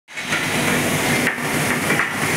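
Steady industrial noise of a steel TMT rolling mill hall: a dense, even din of machinery with a hiss and a faint high whine running through it.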